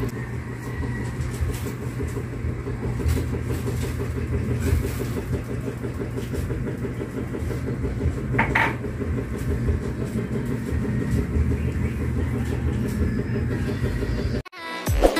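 A steady low motor rumble like an idling engine, with a brief high-pitched tone about eight and a half seconds in.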